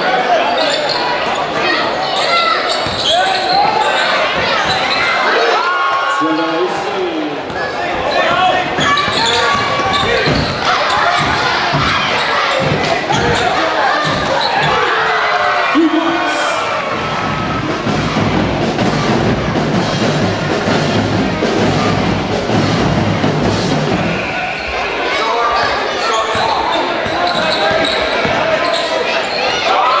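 Live basketball game sound in a gymnasium: a ball bouncing on the hardwood floor and short sharp knocks over a crowd of spectators talking and calling out. A steadier low sound runs for several seconds past the middle.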